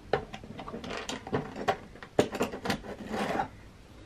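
Small stainless steel tools being handled in the tray of a plastic tool-box-style kit: a run of light clicks and taps, with a brief rub about three seconds in.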